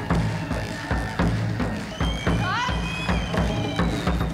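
Ethno-fusion ensemble music on Kazakh folk instruments over a steady drum beat. A few rising pitch swoops come about halfway through.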